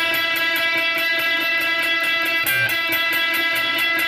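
Semi-hollow Telecaster-style electric guitar through an amplifier, rapidly and evenly picking a repeated high E note against the open high E string, about five picks a second. Briefly a different note joins in about two and a half seconds in.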